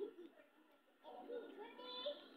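Faint, high-pitched wordless vocal sounds, once at the start and again through the second half, with wavering pitch.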